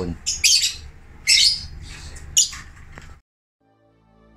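Caged lovebirds giving several short, shrill squawks, spread about a second apart. The sound cuts out abruptly shortly before the end.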